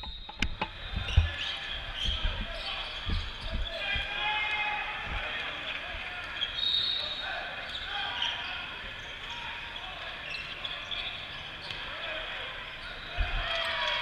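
Basketballs bouncing now and then on the court in a large indoor hall, with distant voices and general gym chatter.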